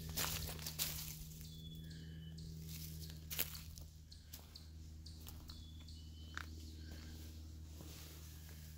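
Footsteps on a forest floor of dry leaves, twigs and loose stone, a few scattered steps over a faint steady low hum.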